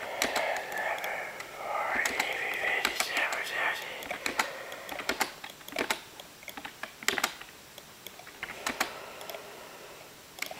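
Scattered irregular clicks and taps, like keys being typed, with a muffled voice under them for the first four seconds or so.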